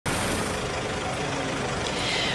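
A vehicle engine idling, a steady even rumble and hiss.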